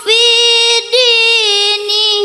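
A girl's solo melodic Quran recitation (tilawah): long held, ornamented vowel notes that waver and step in pitch, with a brief break for breath a little before one second in.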